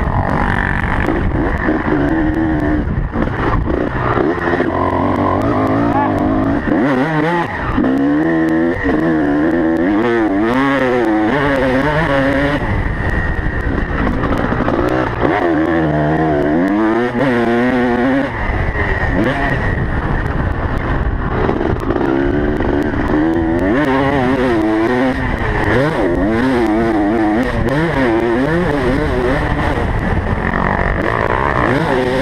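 Motocross bike engine heard from a camera mounted on the bike itself, running hard around a dirt track. Its pitch climbs and drops again and again as the throttle is opened and closed through the corners and straights.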